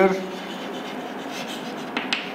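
Chalk writing on a chalkboard: faint scratchy strokes, with a sharp tap of the chalk near the end.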